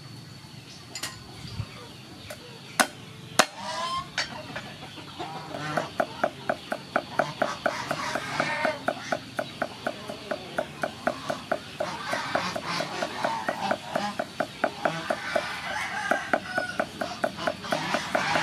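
Cleaver chopping garlic on a thick round wooden chopping block: a couple of single knocks, then from about five seconds in a steady, rapid run of chops, about four a second.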